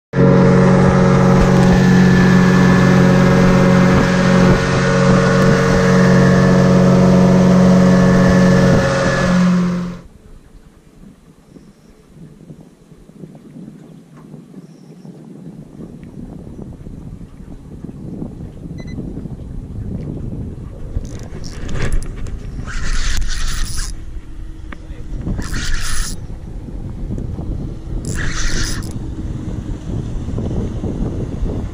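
A boat's engine running steadily at speed, with the rush of the hull and wake, cutting off suddenly about ten seconds in. After that there is a low, uneven rush of wind and water that slowly builds, with three short hissing bursts near the end.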